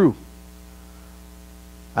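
Steady electrical mains hum, a low buzz with an even stack of overtones, heard in a pause of a man's speech. The end of his last word is heard at the very start.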